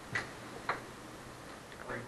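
Faint, distant voices of students calling out answers in a classroom, with two light clicks in the first second.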